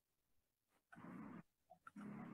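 Two short animal calls, the first about a second in and lasting about half a second, the second starting near the end, with a few faint clicks between them over near silence.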